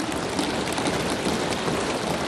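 Many members of the house thumping their desks in approval, a steady dense patter like rain.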